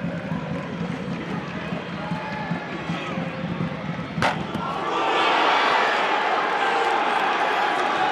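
Football stadium crowd noise during an attack, with a single sharp kick of the ball about four seconds in as the shot is struck. From about a second later the crowd noise rises sharply and stays loud as the goal goes in.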